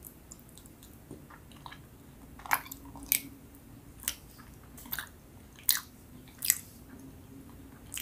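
Close-miked mouth chewing a soft, sticky purple Filipino rice cake (kakanin). From about two and a half seconds in comes a run of sharp wet smacks and clicks, about one a second.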